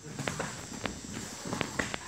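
Kickboxing sparring footwork: feet shuffling and stepping on foam gym mats, with several short, sharp slaps spread through the moment.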